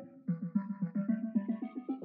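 Synth pluck patch ('Dark Pop Pluck' in the Reason Rack Plugin) playing a running pattern of short, quickly decaying notes, about six a second, with a brief break just after the start.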